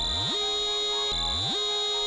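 Electronic alarm sounding twice over a steady synthesized music bed. Each tone sweeps up quickly and then holds, and the second starts about a second after the first.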